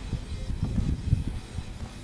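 RC rock crawler on JConcepts Tusk tires clambering through a rock crack: an irregular low rumble with scratchy scraping as the tires and chassis grind over the rock.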